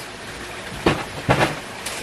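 Paper and cardboard handling as a LEGO instruction manual is pulled from its box: a steady hiss with three sharp crinkles or knocks, one a little under a second in and two close together about half a second later.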